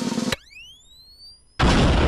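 Animated-intro sound effects: a dense rattling sound cuts off with a sharp click, then several tones glide upward together for about a second, and a loud rushing blast starts near the end.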